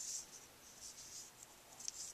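Faint rustling of paper and double-sided adhesive tape being handled on a desk, with a few small crackles near the end.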